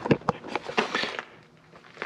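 Handling noise from a camera being moved: two sharp clicks, then about a second of rustling that dies away.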